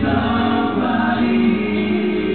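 Live rock performance: several male voices singing together over the band, holding long notes. The recording sounds muffled and narrow.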